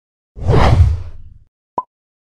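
Logo sting sound effect: a loud whoosh with a deep low end that swells up about a third of a second in and fades out over about a second, followed near the end by a short, sharp ping.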